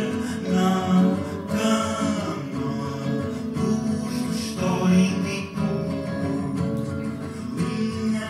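Live acoustic guitar strummed with a voice singing over it.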